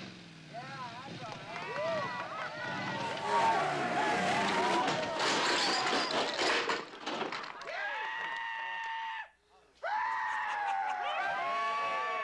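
Motorcycle engine running amid whooping and yelling voices. A loud crash of smashing wood and glass comes a few seconds in as the motorcycle goes through a wall. Long drawn-out yells follow near the end.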